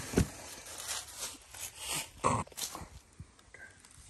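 A scatter of short rustles and knocks as arrows are pulled out of a straw hay-bale target and handled, the loudest about two seconds in.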